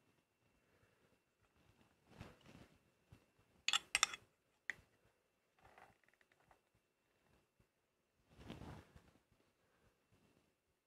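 Handling of a rotary tool and its small aluminium router base while the cutting depth is set: soft rubbing, a brief metallic clatter of clicks about four seconds in, a single click just after, and a soft rub near the end. The tool's motor is not running.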